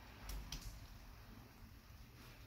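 Faint kitchen handling as a metal spoon spreads pastry cream over rolled dough: a soft low bump and two light clicks in the first half-second, then only a low hum.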